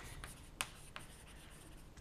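Chalk writing on a chalkboard: faint scratching strokes and small taps of the chalk, with a sharper tap about half a second in.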